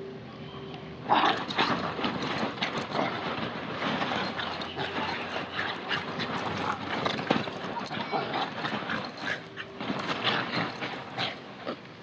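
Two Bichon Frise dogs play-fighting in and around a bean bag chair: dog vocal noises mixed with scuffling and the rustling of the bean bag's cover, starting suddenly about a second in and going on busily.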